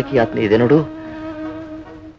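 A man's voice for the first part of a second, then a steady buzzing tone held on one pitch for the rest.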